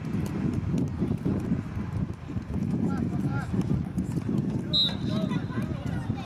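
Low rumble of wind buffeting the microphone, with faint voices of spectators and players, and a short high whistle blast about three-quarters of the way through, just before a kickoff.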